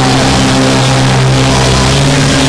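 Live rock band playing loudly: a low note held steady under a wash of cymbals.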